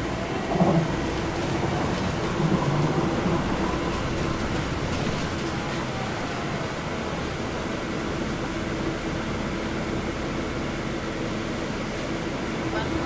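Cabin noise of a NABI 416.15 transit bus under way: the Cummins ISL9 diesel's steady drone and hum, with tyre hiss from the wet pavement. A couple of brief louder bumps come in the first three seconds.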